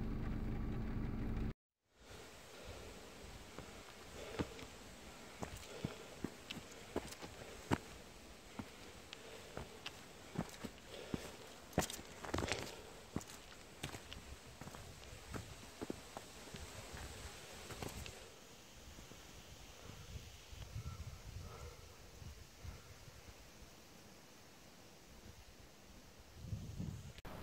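A steady hum for the first second and a half, cut off abruptly. Then faint, irregular footsteps crunching on a rocky, gravelly trail, a step about every second, growing sparser and fainter in the last third.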